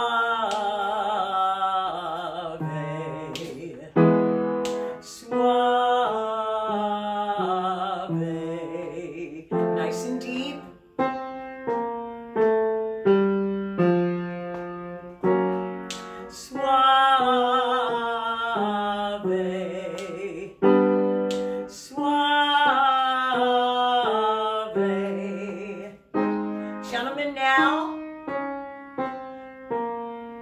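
A woman singing a loud chest-voice vocal exercise on "swa", holding each note open on the vowel with vibrato, accompanied by an upright piano playing chords. The piano carries on alone between the sung phrases, and the exercise moves up in semitone steps.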